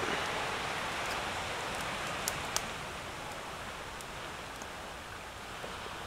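Small waves of a calm sea breaking and washing up a sandy beach: a steady hiss of surf that slowly fades. There are two faint clicks a little over two seconds in.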